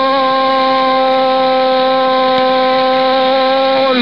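A Spanish-language radio football commentator's shouted goal call, held as one long, steady note at an unchanging pitch and cut off at the end.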